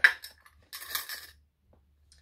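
A glass clip-top jar's metal clasp snapping open with one sharp click, followed about three-quarters of a second in by a short clinking rattle from the glass jar and the seed mix inside.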